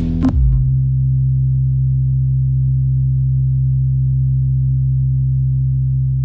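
A final hit of electronic music a fraction of a second in, then one low synthesizer note held steady and unchanging.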